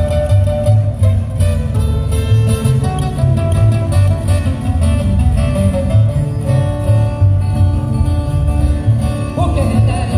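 Live pirekua ensemble of acoustic guitars and upright double bass playing, with the bass notes pulsing on the beat; a singing voice comes in near the end.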